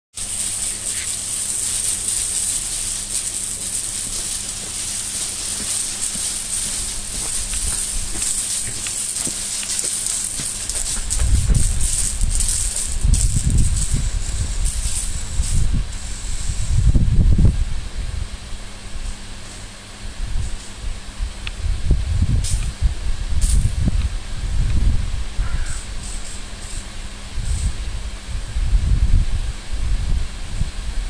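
Overhead arena watering system spraying from roof-mounted nozzles: a steady high hiss that fades away a little past halfway. From about a third of the way in, low gusts of wind buffet the microphone.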